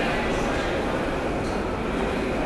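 Steady rumbling din of a subway station, with the low rumble of trains running in the tunnels.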